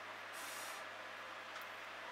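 Faint room tone: a low steady hum under an even quiet hiss, with a brief soft burst of higher hiss about half a second in.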